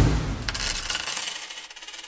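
Outro sound effect: a low boom, then about half a second in a bright, glittering shimmer of many rapid metallic ticks that slowly fades and cuts off abruptly.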